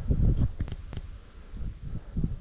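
An insect chirping steadily at a high pitch, about four to five chirps a second, over uneven low rumbling of wind on the microphone. Two short sharp clicks come just before the one-second mark.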